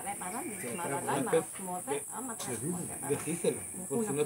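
Indistinct talking from several people in a group, over a steady high-pitched hiss of insects in the trees.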